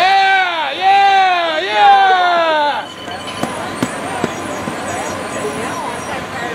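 A loud shouted voice cheering a runner on with drawn-out "up" calls for about three seconds, then quieter crowd chatter with a few sharp clicks.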